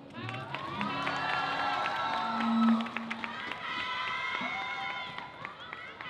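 Audience cheering after a song, with many high-pitched shouts and drawn-out calls overlapping and scattered hand claps.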